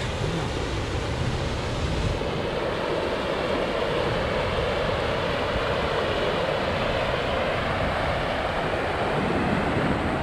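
Canal water rushing hard over a concrete bypass weir beside a lock, a steady, fierce roar of falling water. Wind buffets the microphone for the first couple of seconds.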